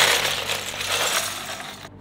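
A mass of plastic Lego bricks clattering and rattling as they are poured out of a plastic bin. It is loud, and it cuts off suddenly near the end.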